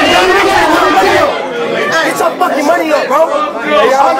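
Crowd chatter: many voices talking and shouting over one another in a packed room, none standing out as clear words.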